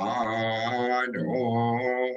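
A man chanting a mantra in long, level held tones, with a short break about a second in.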